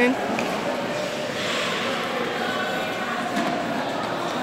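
Steady background hubbub of an indoor ice rink, with faint distant voices.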